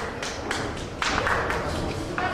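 Several sharp thuds and taps from a boxing bout in the ring, spread through the two seconds.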